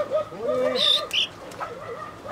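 A Sultan chicken giving a low, wavering warble of short notes, with a couple of brief higher squeaks about a second in, as it is picked up for handling.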